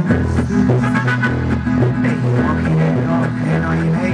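Band music with a sousaphone playing a stepping bass line under the other instruments: the instrumental introduction of a song.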